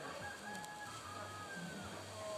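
A rooster crowing once, a drawn-out call that falls away near the end.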